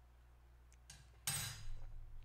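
A metal teaspoon set down on a hard surface, a sudden short clatter just over a second in after a fainter knock.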